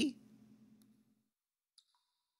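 A man's word cuts off at the start, followed by near silence, with one faint short click near the end.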